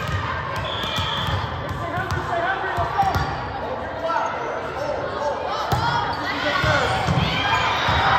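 Volleyball being struck in a gym, with sharp smacks of the ball on hands and arms standing out, several in the second half as a rally gets going. Players and spectators talk and call out around it.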